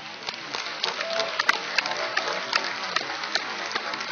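Audience applauding, a dense patter of many hands clapping that swells over the first second.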